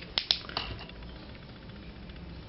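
Two quick sharp clicks in close succession near the start, then a low steady room background.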